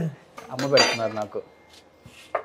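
Metal utensils and dishes clinking at a kitchen counter, with a brief low voice about half a second in and a few faint clicks near the end.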